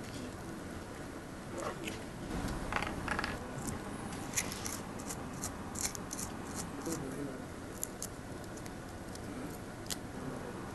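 Faint scratching, crinkling and small sharp clicks as fingers work the stripped end of a shielded DC power cable, with its foil wrap and wire braid exposed. The clicks come in an irregular run through the middle of the stretch.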